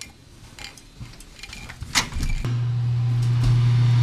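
A click, then a steady low electric hum starts about halfway through and carries on: a water dispenser running as a cup is filled with water.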